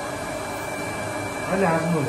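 Steady whir of an electric machine with a thin high whine held at one pitch, and a short burst of voice near the end.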